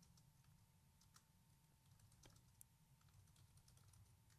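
Faint keystrokes on a computer keyboard: a scattering of light, irregular clicks as a command is typed.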